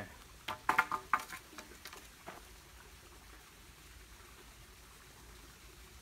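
A small rocky creek trickling steadily, with a few short, sharp scrapes or knocks in the first second and a half.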